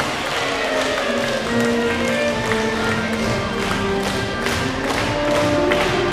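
Live military brass band playing, with sustained brass chords and tuba lines over regular drum-kit strikes.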